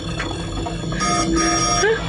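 Computer-interface sound effects from the avatar-matching display: a steady electronic tone held for under a second, then a quick rising chirp near the end.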